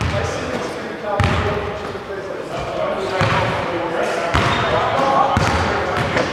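Basketball bouncing on a hardwood gym floor, a few separate thumps a second or so apart, echoing in a large hall.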